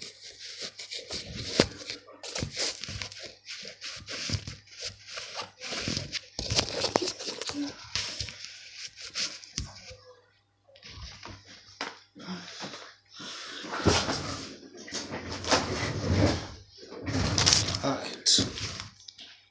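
Close rustling and handling noise, with fabric rubbing right against the phone's microphone and sharp knocks, mixed with muffled wordless vocal sounds.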